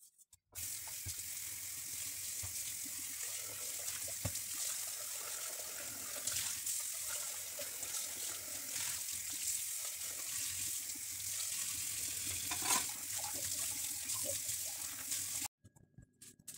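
Kitchen tap running onto a metal pot in a stainless steel sink as the soap is rinsed off. The flow starts about half a second in and cuts off abruptly near the end, with a few light knocks along the way.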